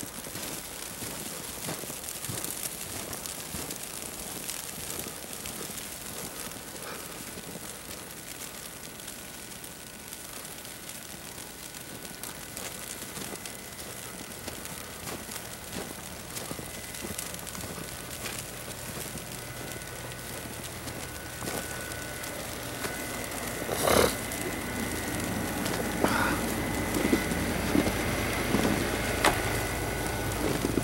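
Crackling outdoor noise of falling snow and handling as someone walks through deep snow. Near the end come a sharp knock and a run of dull steps about a second apart, as the walker crosses a snow-covered wooden deck.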